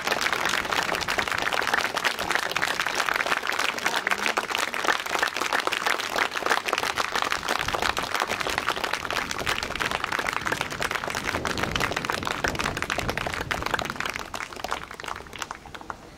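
Audience applauding, a dense steady clapping that thins out and fades away in the last two seconds.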